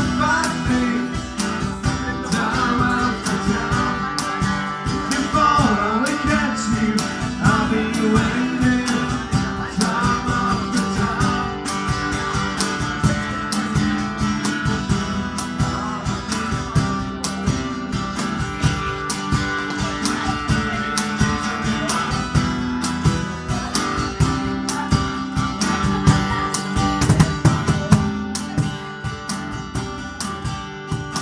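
A band playing an instrumental stretch of a pop-song cover, led by guitar over strummed chords and a steady drum beat.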